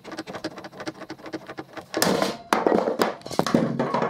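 Quick-release bar clamp, reversed as a spreader, pumped with a rapid run of ratcheting clicks. About two seconds in, the glued MDF butt joint snaps apart with a sudden crack, breaking cleanly at the glue line, followed by a longer stretch of knocking and clatter.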